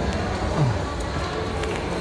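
Background music playing in a public space, with indistinct voices mixed in.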